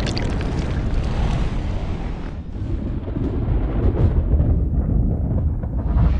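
Slowed-down shotgun blast and impact: a deep, drawn-out rumbling boom. Its hiss fades about two seconds in while the low rumble carries on.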